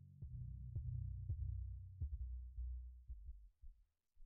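Faint handling noise: a low rumble with soft, irregular thuds from hand and body movement, dying away near the end.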